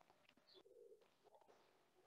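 Near silence, with a very faint, short pitched sound about halfway through.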